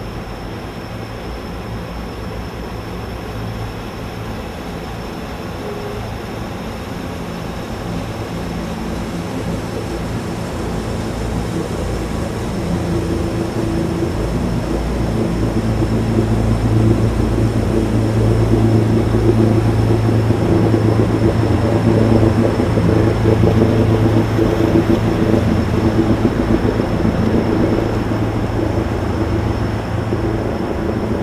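An engine's low, steady drone that grows louder over the first half and stays loud through most of the second half before easing slightly near the end.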